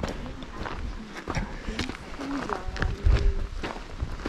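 Footsteps on a loose gravel track, a run of short crunches, with a brief stretch of a person's voice in the second half and a low thump a little after three seconds.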